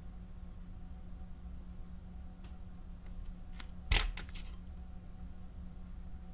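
Steady low room hum with a few faint clicks, and one sharper click about four seconds in: small makeup items and tools being handled and set down.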